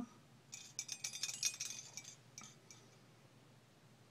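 Metal earrings and bangles clinking and jingling against each other as they are handled on a display: a flurry of light, high clinks lasting about two seconds.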